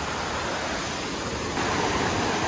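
Mountain brook rushing over rocks below a small cascade, a steady rush of water that gets louder about one and a half seconds in.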